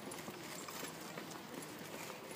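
A bicycle ridden over an asphalt path, rattling and clicking in irregular short ticks, a few each second, over a low rolling hiss.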